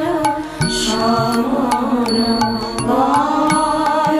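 A Bengali devotional song: a voice singing over instrumental accompaniment, with a steady drone underneath and sharp hand-percussion strokes keeping a regular beat.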